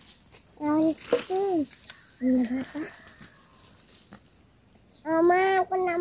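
A steady, high-pitched drone of insects runs throughout. Over it, a child's high voice calls out in short bursts: about half a second in, again at about two seconds, and in a longer held call from about five seconds.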